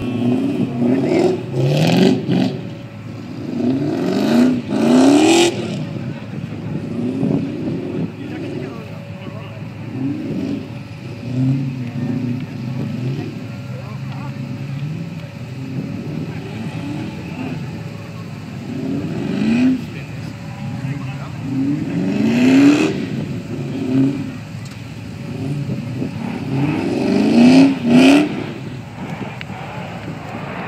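Car engine revved hard over and over while the car does circle work on grass, the revs climbing in repeated sweeps and dropping back, with a few short loud bursts at the highest peaks.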